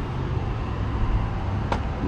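Steady low rumble of street traffic, with one sharp click near the end.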